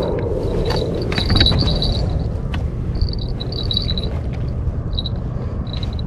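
Small fishing bell clipped to the rod tip jingling on and off in short bursts as the rod is carried and moved, with a few light clicks over a steady low rumble.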